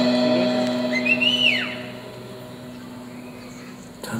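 The band's last sustained chord dies away over the first two seconds. About a second in, someone in the audience gives a single whistle that rises and then falls in pitch.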